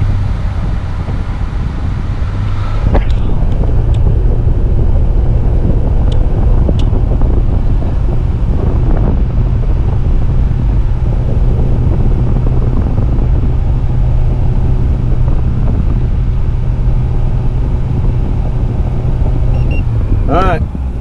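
A 2012 Kia Rio's heater blower is rushing hot air out of the dash vents with the engine idling, heard inside the cabin. It gets louder about three seconds in, then runs steadily. The vent air reads about 168°F, a sign that hot coolant is flowing through the heater core after the refill.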